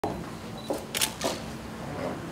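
Camera shutters clicking: three quick shots in about half a second, a little under a second in, the middle one the loudest.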